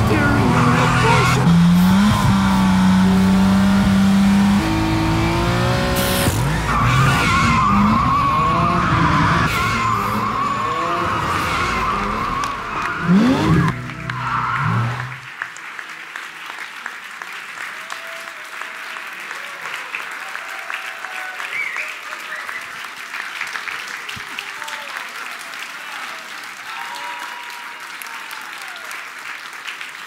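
A car soundtrack with music played over the hall's speakers, with car engine sounds and tyre squeal and a rising rev near its end, cutting off suddenly about halfway through. Then applause and scattered cheering from a dinner audience.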